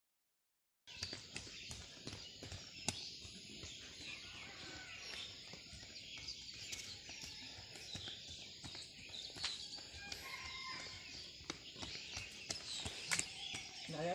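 Outdoor field ambience with many birds chirping faintly and a few scattered thuds or clicks, starting after about a second of silence.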